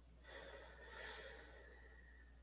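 A person taking one long, faint breath that starts about a quarter second in and fades before the end, part of a slow, controlled breathing exercise.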